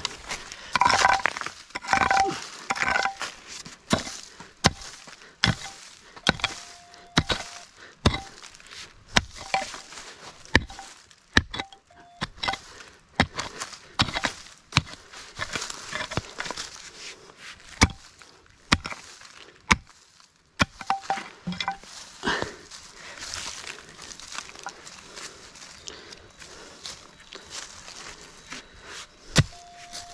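Pickaxe digging into stony soil around a large rock: irregular blows, about one or two a second, each a sharp thud of the blade biting into earth and stones.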